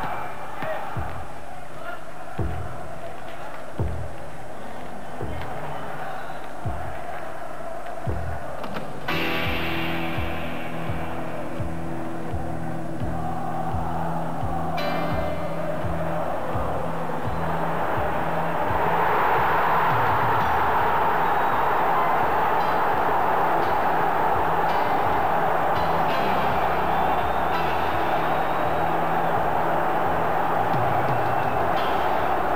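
Soundtrack music with a slow thudding beat, turning into long held low tones about nine seconds in. From about twenty seconds in, the steady roar of a large football crowd swells and takes over as the loudest sound.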